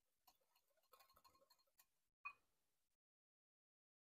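Faint clicks of a wire whisk against a glass bowl as sour cream is whisked with hot soup liquid to temper it, with one sharper tap a little over two seconds in.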